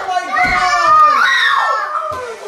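Several children yelling and shrieking in dismay, their high voices sliding up and down, with a thump of feet on the floor about half a second in.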